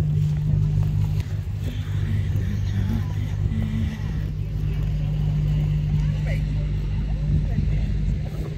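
A steady low mechanical drone, like an engine running, holding even throughout.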